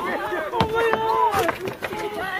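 People calling out with raised voices, one call held for about a second in the middle, with a few sharp knocks.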